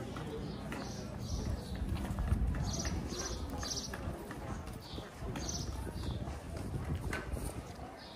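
Footsteps on cobblestones, about two steps a second, amid the chatter of a crowd of pedestrians.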